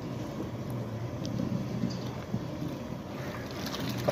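Steady low rumble of a large wok of broth boiling hard on its stove, while broth is scooped out with an aluminium pot and poured back in.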